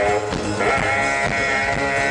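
Live jazz band with a horn section playing: a pitch slide just after the start, then the horns hold a bright sustained chord over the drums and bass.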